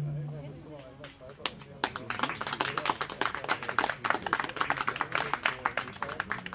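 The last chord of an acoustic guitar fading out, then a small audience applauding from about a second and a half in, with voices mixed into the clapping.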